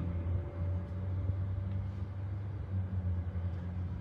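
A steady low mechanical hum with no distinct events.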